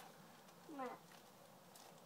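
Near silence with one short word spoken, its pitch falling, just under a second in.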